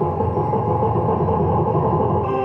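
Huff N' Puff slot machine playing its win sound effects: a dense jingle of cascading coin sounds over the game's music.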